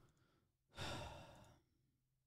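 A single breathy sigh close to the microphone, lasting under a second and starting just under a second in; otherwise near silence.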